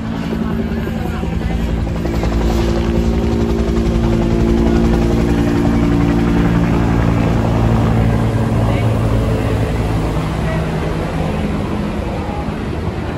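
Helicopter flying overhead, its rotor chop pulsing steadily. It grows louder over the first few seconds, then slowly fades.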